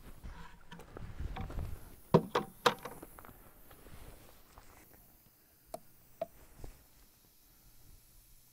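Handling noise as a plastic bucket is set down on a platform scale: low rumbling shuffles, then three sharp knocks a little over two seconds in. A few faint clicks follow near the end.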